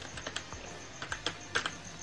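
Computer keyboard typing: an irregular run of quick, faint key clicks as a short phrase is typed.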